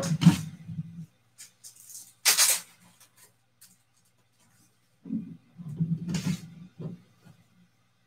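Clear plastic card sleeve and top loader being handled: a short crinkling swish about two seconds in, a second shorter one about six seconds in, and faint taps between.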